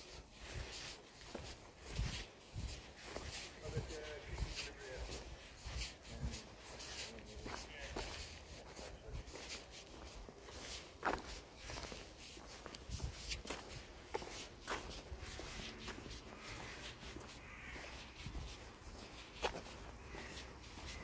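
Footsteps walking on a tarmac path, an irregular run of scuffs and taps with a few louder knocks.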